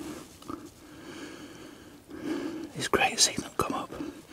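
A man whispering a few words about two seconds in, after a quiet pause.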